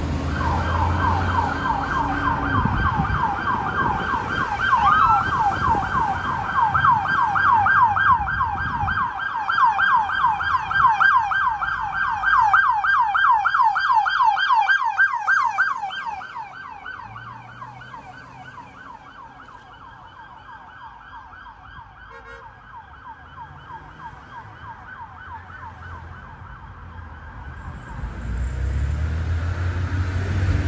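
Police car siren in rapid yelp mode, wailing up and down about four times a second. It is loud for the first half, then drops sharply to a faint yelp that dies away near the end.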